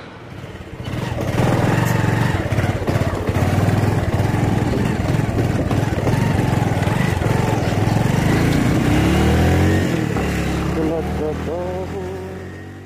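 Motorcycle engine running under way, heard from the rider's seat, starting about a second in; its pitch rises late on as it accelerates.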